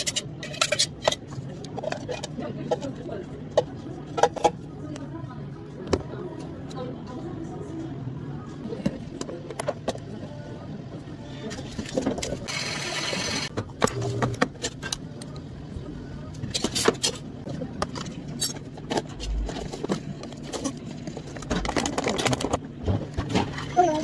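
Drink-making at a café counter: cups, a spoon and other utensils knocking and clinking in short, irregular strikes, with a steady hiss of about two seconds near the middle.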